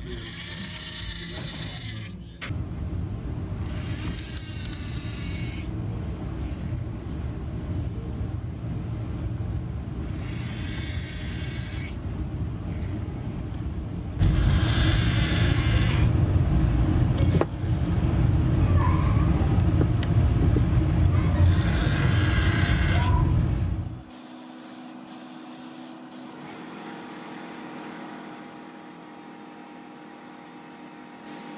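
A steady low rumble with several louder stretches of mid-pitched whirring. From about 24 s in, this gives way to an airbrush hissing in short on-and-off bursts.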